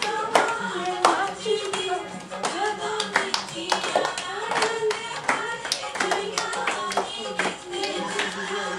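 Punjabi giddha: female voices singing boliyan-style folk verses over sharp group hand claps in time with the song.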